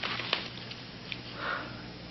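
A pause filled with a steady low hum and hiss, a few faint clicks, and a soft intake of breath about one and a half seconds in, just before speech resumes.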